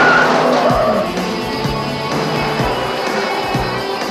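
Car tyres squealing as a sedan skids through a hard turn, loud in the first second and then fading. Dramatic film score underneath, with a low drum hit about once a second.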